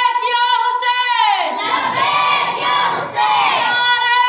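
A single high voice singing a devotional chant in long held notes. One note slides down in pitch just after a second in, and another falls near the end before a new steady note begins.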